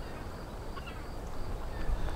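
Quiet seaside dawn ambience: a steady low rumble with a faint bird call just under a second in.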